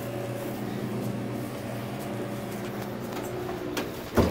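A steady low machine hum made of several steady tones, with no change in level.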